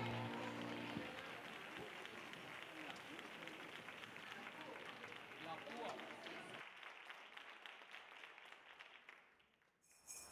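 The last chord of a live band rings out and stops about a second in, followed by audience applause and crowd voices that fade steadily and die away to silence near the end.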